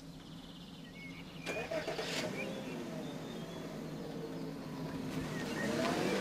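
A car engine starting and running, growing louder about a second and a half in.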